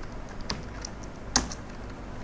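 Computer keyboard keys clicking as a few keys are typed, the sharpest stroke a little over a second in.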